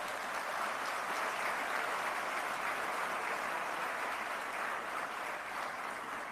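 Audience applauding: steady clapping that eases slightly near the end.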